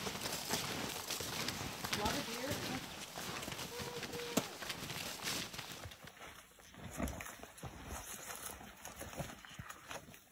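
Snowshoe footsteps crunching in snow, a run of repeated steps from more than one walker, with faint voices now and then.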